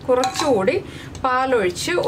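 A woman speaking, with light clinks and scraping of a spatula mashing cooked carrots in a metal pressure cooker beneath the voice.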